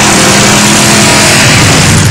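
Pickup truck engine revving and then held at steady revs under a loud rushing noise, as the truck, stuck in wet snow, spins its wheels trying to rock free. The engine note fades away near the end.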